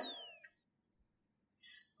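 The fading tail of a high, whistle-like sound effect whose pitch falls slowly, dying away within about half a second. Near silence follows.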